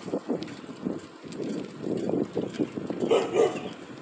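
Bicycle rolling on asphalt, with gusty wind rumbling on the microphone from the ride's speed. A louder, sharper sound cuts in briefly about three seconds in.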